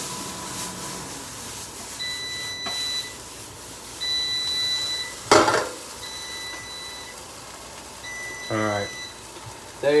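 An electronic appliance beeper sounding a steady beep about a second long, repeating every two seconds or so, over the faint sizzle of frying in a pan. A short, sharp burst of noise cuts in about five seconds in.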